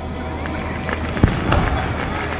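Fireworks: a single sharp bang a little over a second in, followed shortly by a softer one.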